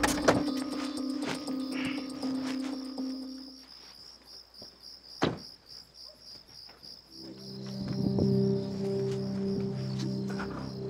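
Background music of sustained low notes that fades out a few seconds in and comes back about seven seconds in. Under it, night insects chirp in a steady, fast, high-pitched pulse throughout, with one sharp click about five seconds in.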